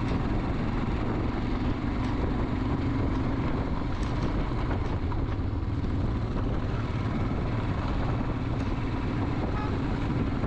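Royal Enfield Himalayan's single-cylinder engine running at a steady cruise on a rough, dusty road, with wind noise over the camera microphone.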